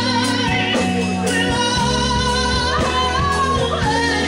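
A solo singer holding long, wavering notes with strong vibrato into a microphone, backed by a live band with sustained bass notes underneath.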